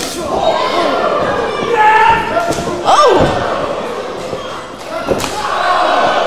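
Several sharp thuds of strikes and body impacts in a pro wrestling ring corner, with shouting voices between them.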